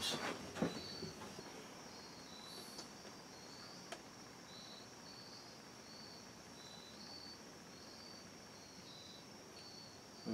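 Faint, regular insect chirping in high short pulses over a low background hiss, with a single small click about four seconds in.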